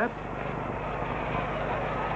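Steady background noise with a faint low hum, the hiss and hum of an old film soundtrack, with no distinct event.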